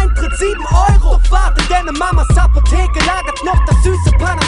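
Hip hop track: rapped vocals over a beat with a deep, steady bass and regular drum hits.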